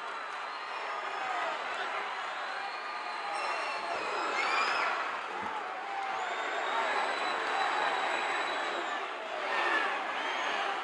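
Wrestling arena crowd cheering and yelling, a steady din of many voices with a few shouts standing out, swelling slightly midway.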